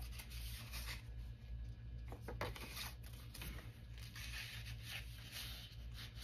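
Faint rustling of paper and card being handled and slid into a paper pocket, with a couple of light taps a little past the middle, over a low steady hum.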